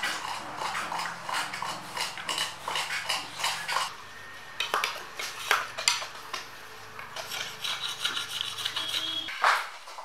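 Coconut palm leaf strips being scraped and split with knives by hand: rapid, irregular scrapes and clicks with leaves rustling. A low steady hum runs underneath and stops near the end.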